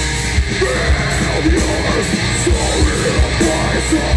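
Live hardcore band playing loudly: distorted electric guitar and heavy drums with yelled, screamed vocals over them.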